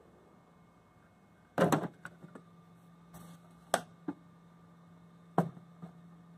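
Hard plastic knocks and clicks as the side filament-compartment cover of a FlashForge Adventurer 3 is pulled off and the filament spool is handled. A loud cluster of knocks comes about a second and a half in, a short scrape follows, and several sharp single clicks come later, over a low steady hum.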